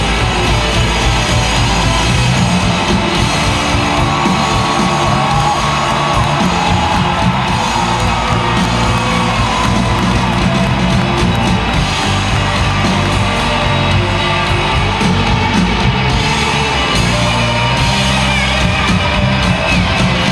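Live rock band playing loud over an arena PA, with an electric guitar line sliding and sustaining over bass and drums. Audience whoops and cheers can be heard under the music.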